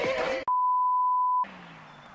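An edited-in steady 1 kHz bleep tone lasting about a second, with all other sound cut out beneath it, the kind used to censor a word. It abruptly cuts off talking voices about half a second in.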